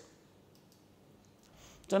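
Near silence with a faint click or two, then a man's voice starts speaking right at the end.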